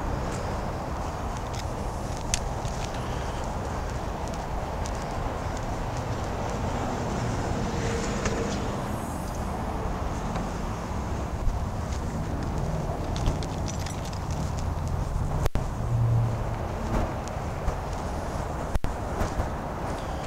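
Footsteps on pavement over a steady low rumble, with two sharp clicks near the end.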